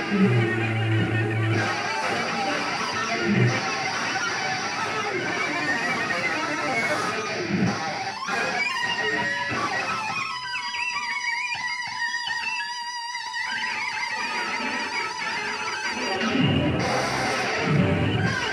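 Saxophone and cello playing free improvised noise music together, a dense, harsh, grinding texture. About ten seconds in it thins for a few seconds to a single held, wavering high tone before the full texture returns.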